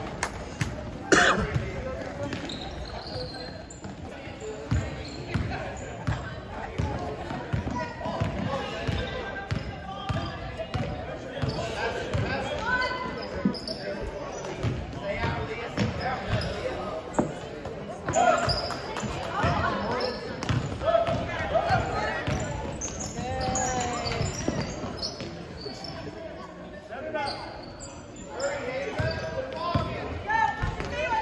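A basketball being dribbled and bounced on a hardwood gym floor during play, a steady run of short thuds with a louder knock about a second in. Voices of players and spectators echo around it in the large gym.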